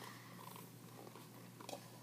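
Near silence: faint room tone with a steady low hum and a few faint soft clicks near the end.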